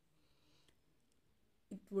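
Near silence with a couple of faint clicks about two thirds of a second in; a woman's voice starts speaking near the end.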